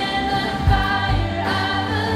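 Live worship music: women's voices singing a melody over strummed acoustic guitar and a low, steady beat.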